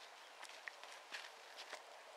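Near silence with faint, irregular soft clicks and rustles, a few a second.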